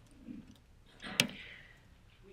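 A short breath and a single sharp click about a second in: a key or clicker pressed at the lectern to advance the lecture slide.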